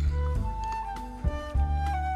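Background music: a high melody line moving in steps over repeated low bass notes.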